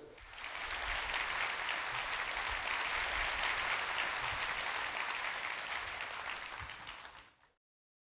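Audience applauding, a steady mass of clapping that fades near the end and cuts off abruptly just before the end.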